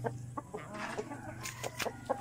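Chickens clucking in short, scattered calls, fairly quiet.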